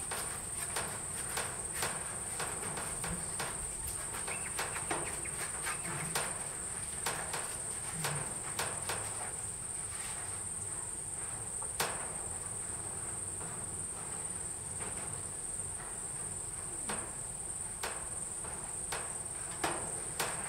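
A steady high-pitched insect drone, with scattered soft clicks and thuds from a horse and a person walking on a sand arena floor.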